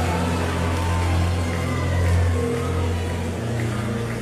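Background music of sustained low chords, held steadily, with the bass note stepping up near the end.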